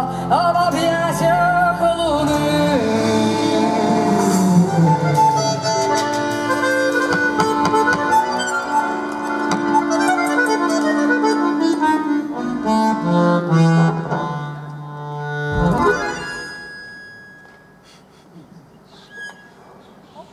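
Live band closing a song, with accordion playing long held chords over guitar and keyboard. About three-quarters of the way in, a final struck chord rings out and dies away to quiet.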